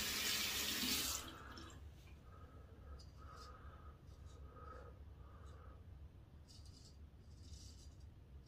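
Bathroom sink tap running for about the first second, then shut off. After it come faint, short scrapes of a stainless steel straight razor (Henckels Friodur) cutting through lathered stubble.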